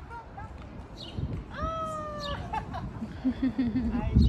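A toddler's short high-pitched squeal in the middle, rising and then held for under a second. Near the end a lower voice gives a few short notes.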